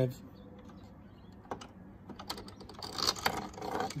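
Small plastic-and-metal handling clicks and rattles as the stainless-steel camera head of a drain inspection camera is worked free of its holder on the cable reel frame. There is a single click about a second and a half in, then a quick run of clicks and scrapes that is loudest near the end.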